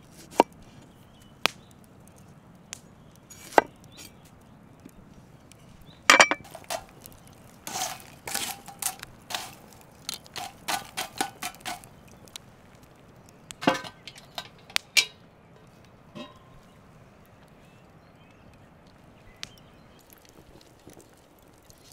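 A large knife chopping tomatoes on a wooden cutting board: single sharp knocks a second or two apart. In the middle comes a quicker run of sharp cracks and clicks, then a few more knocks, and the last few seconds are quieter.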